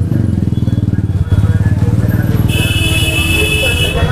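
Motorcycle and scooter engines running close by in stopped, jammed street traffic, a steady low throb. About halfway through, a shrill high-pitched vehicle horn joins and keeps sounding.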